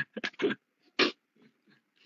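A person laughing briefly: a few quick chuckles, then one more about a second in.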